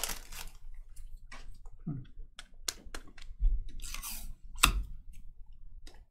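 Baseball cards being handled and shuffled by hand: scattered light clicks and short rustles, the loudest about four and a half seconds in.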